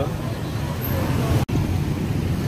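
Street ambience: a steady low rumble of traffic, cut off for an instant about one and a half seconds in, where the audio is spliced.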